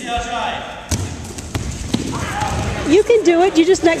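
A few dull thuds of bodies and knees landing on foam wrestling mats during a takedown drill, with people talking over them.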